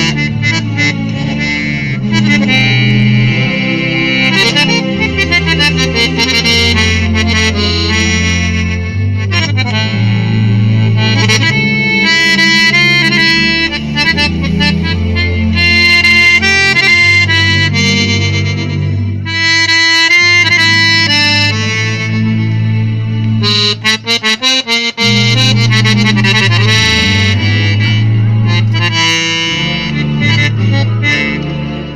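Piano accordion playing a tune, a melody over held bass notes and chords, with a few short clipped notes about three-quarters of the way through.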